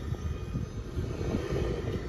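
Steady low rumble of a car's engine and tyres, heard from inside the cabin while driving on a gravel road.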